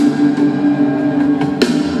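Live rock band playing an instrumental passage: held sustained chords over drums, with a drum hit at the start and another about one and a half seconds in.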